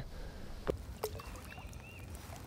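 Faint water movement around a wading angler, with two short knocks about a second in and a few faint high chirps in the second half.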